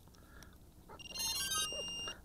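Electronic startup beeps from the Eachine Racer 180 tilt-rotor's ESCs and motors as its 4S battery is connected: a short run of high-pitched tones stepping in pitch, starting about a second in, the sign that the electronics have powered up.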